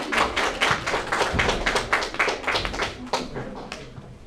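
Small audience clapping by hand, a quick irregular patter that dies away toward the end.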